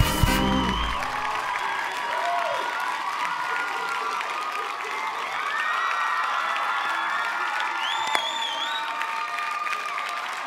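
Studio audience applauding and cheering. Band music cuts off about a second in, and a few high whoops rise out of the crowd near the end.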